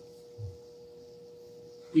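A faint, steady single-pitched hum in a quiet pause, with a brief low murmur about half a second in; a man's speech starts at the very end.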